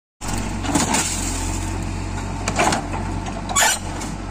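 JCB backhoe loader's diesel engine running steadily while its bucket presses down on a wrecked car, with three short bursts of crunching and scraping from the car's metal body giving way.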